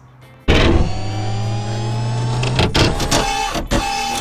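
Loud produced intro sting for a title card. It hits suddenly about half a second in with a held, buzzing machine-like chord, breaks into a quick run of sharp clicks near the end, and cuts off abruptly.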